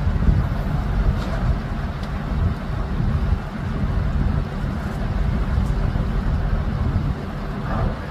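Steady low rumble of the heavy lifting machinery's engine as the steel footbridge span is lowered onto its abutment, mixed with wind buffeting the microphone.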